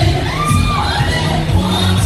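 Audience cheering and shouting, with a few high whoops in the first second, over loud pop music with a heavy bass line.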